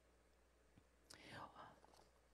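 Near silence: room tone, with a faint whispered breath from a woman about a second in.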